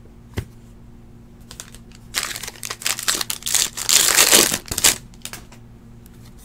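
Trading card pack wrapper being torn open and crinkled: about three seconds of crackling rustle starting about two seconds in, loudest near the end of it. A single light tap comes shortly before.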